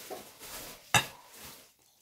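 Hot milk being poured out of a metal non-stick saucepan, with one sharp clank of the pan about a second in.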